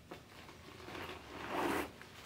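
A brown leather Brighton handbag being handled and turned over: soft rustling and rubbing that grows louder about a second and a half in.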